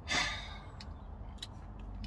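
A man's audible breath out near the start, a short sigh, then a steady low hum with a couple of faint clicks.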